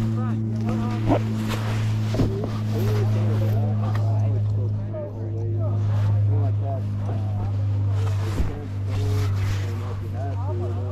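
An off-road vehicle engine idling steadily, a constant low hum, with three short knocks about a second in, about two seconds in and near the end. Voices talk faintly in the background.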